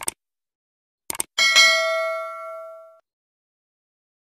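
Subscribe-button animation sound effect: a mouse click, two quick clicks about a second later, then a notification bell ding that rings for about a second and a half and cuts off suddenly.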